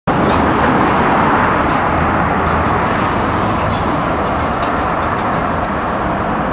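Steady road traffic on a multi-lane city road: an even noise of tyres and engines, with no single vehicle standing out.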